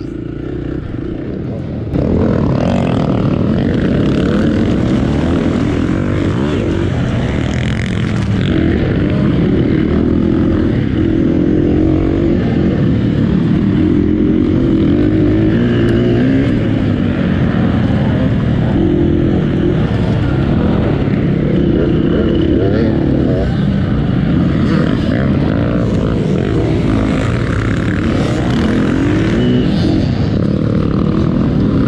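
Off-road dirt bike engine under hard riding, its pitch rising and falling as the throttle is worked, getting louder about two seconds in.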